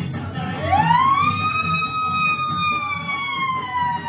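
One long, high-pitched held tone that swoops up about half a second in, holds for about three seconds while slowly sinking, then drops away sharply at the end, over music with a steady low beat.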